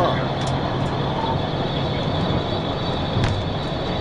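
Steady rush of road and wind noise with a low engine drone from a police cruiser driving at over 100 mph, heard from inside the car.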